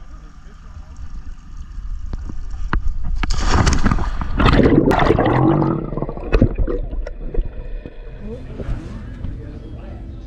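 Water sloshing and gurgling around a camera as it is dipped below the sea surface, loudest in the middle, followed by muffled underwater noise with scattered clicks.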